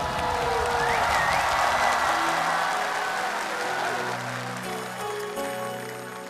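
Studio audience applauding and cheering, dying away over the first few seconds as a soft keyboard intro begins underneath and takes over.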